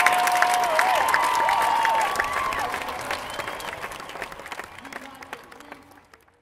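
A small audience clapping and whooping as a string-band tune ends. The applause fades out steadily over the last few seconds.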